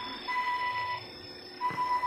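Electronic beep tones at one steady pitch, a long beep lasting under a second and a second one starting about a second and a half in, part of a simulated broadcast-connection sound effect.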